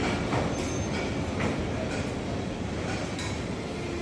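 Steady rumbling machinery noise at a heavy industrial plant, with scattered metallic clinks and knocks.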